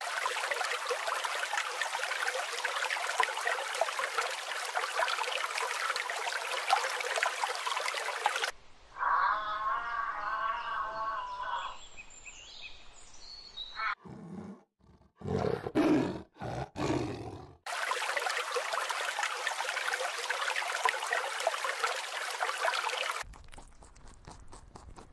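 A run of short animal sound clips: a steady rushing noise, then a brief high pitched call, then a few loud low roars in quick succession, and the rushing noise again.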